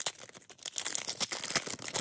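Foil wrapper of a Pokémon trading-card booster pack being torn open by hand: a continuous run of crinkling and ripping as the top strip is pulled off.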